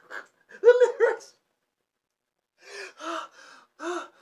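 A man laughing hard, with gasping breaths: two short voiced bursts of laughter in the first second, a pause of about a second and a half, then breathier laughs near the end.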